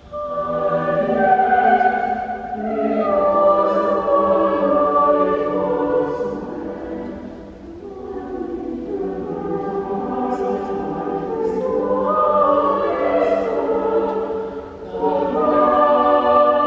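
Choir singing slowly in long, held phrases, with short breaks between phrases.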